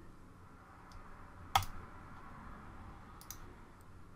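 Computer mouse clicks: one sharp click about one and a half seconds in, then a quick pair of fainter clicks a little past three seconds, over a faint steady hum.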